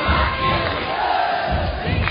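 A crowd of spectators shouting and cheering, with music underneath.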